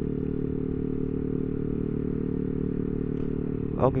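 Yamaha Aerox 155 scooter's single-cylinder engine, breathing through a 3Tech Ronin Hanzo aftermarket exhaust, running at a steady cruising speed with an even, unchanging note.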